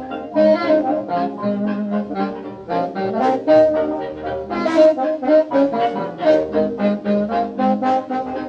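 Instrumental passage of a 1920s dance orchestra's fox-trot: the band plays on a steady, even beat, with no singing.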